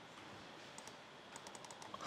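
Faint clicking on a laptop over quiet room hiss: one click a little under a second in, then a quick run of clicks in the last half-second or so.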